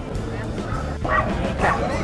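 A dog barking twice, about a second in and again half a second later, over steady background music.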